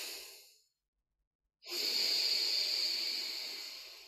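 A man breathing hard through one nostril during alternate nostril breathing, his fingers closing the other nostril. One breath fades out about half a second in, and a second long, hissing breath starts just under two seconds in and slowly fades.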